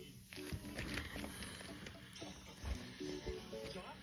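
Faint music with a stepping melody, and a little speech, playing from a video on a tablet's speaker.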